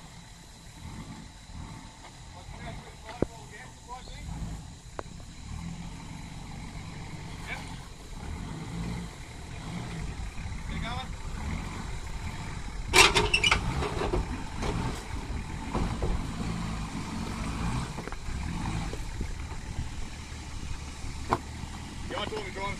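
Nissan Patrol four-wheel drive's engine running at low revs as it crawls over rocks, growing louder as it comes closer, with a sharp knock about thirteen seconds in.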